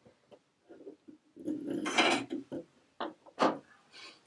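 Handling sounds of a metal tapestry needle, silk yarn and a small basswood loom on a wooden tabletop: scattered small ticks, a longer rustle in the middle, and two sharper taps near the end.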